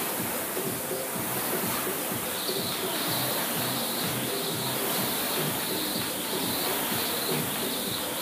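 Background music playing, with a speed jump rope whirring during double unders: short high swishes about twice a second, starting a couple of seconds in.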